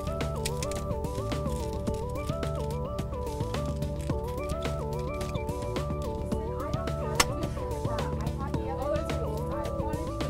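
Instrumental background music: a repeating stepwise melody over a steady bass pattern. Faint light clicks sound under it, with one sharper click about two-thirds of the way in, as gelatin capsules are loaded into the plate of a capsule-filling machine.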